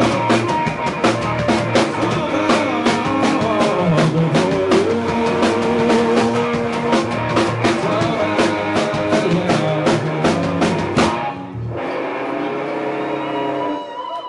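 Live rock band with electric guitar and drum kit playing a fast, driving passage with dense cymbal and snare hits. The playing stops about eleven seconds in, and a quieter held tone rings on.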